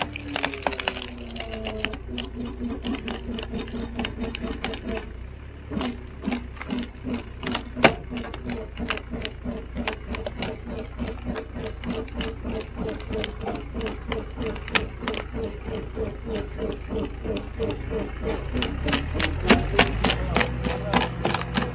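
Tractor-driven hydraulic wood splitter working under load: a steady engine hum with a pulsing drone over it, dropping in pitch in the first two seconds as the load comes on, while a tree root stump is forced onto the wedge. The wood cracks and splinters throughout, with one sharp, loud crack about eight seconds in.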